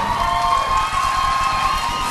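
Concert audience cheering and applauding after a song ends, with a faint sustained high tone above the crowd noise.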